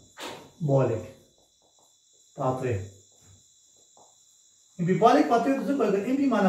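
A man speaking in short phrases with long pauses between them, the talk picking up near the end. Underneath, a faint, steady high-pitched whine.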